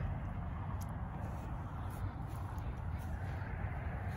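Steady wind rumble on the microphone with a faint hiss above it, and a few faint clicks.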